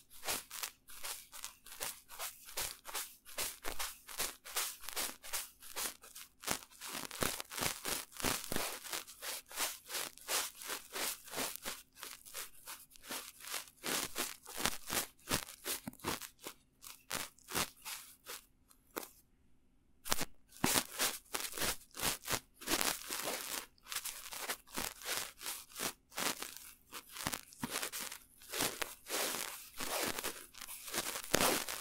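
Two small artist's paintbrushes brushed directly over the microphones of a Tascam DR-05 handheld recorder: close, rapid, crisp scratchy bristle strokes, with a brief pause about two-thirds of the way in.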